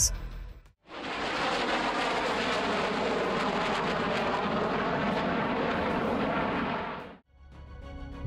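Jet noise of an F-117 Nighthawk in flight, from its two non-afterburning turbofans: a steady, even rush that starts about a second in and fades out near the end.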